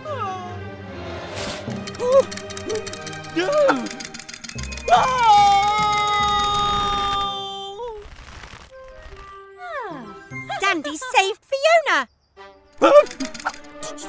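Cartoon soundtrack: background music under wordless character vocalisations, with gliding exclamations and one long held call from about five to seven seconds in.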